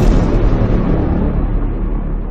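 Explosion-style sound effect for an animated logo: a low rumbling boom whose hiss fades away over the two seconds.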